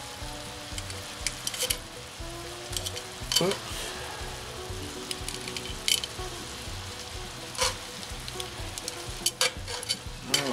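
Bratwursts sizzling and simmering in beer and onions in a cast iron skillet, a steady hiss. Metal tongs click against the sausages and pan several times as the brats are turned.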